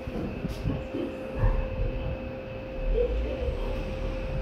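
Orona 3G machine-room-less traction elevator closing its car doors and starting off, with a low thump about a second and a half in and a steady hum running underneath.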